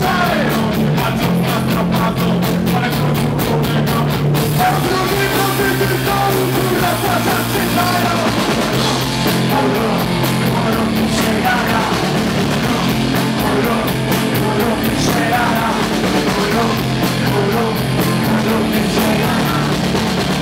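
Punk rock band playing live at full volume: electric guitars, bass and drums with shouted vocals. The beat is fast and even over the first four seconds or so, and then the drumming changes.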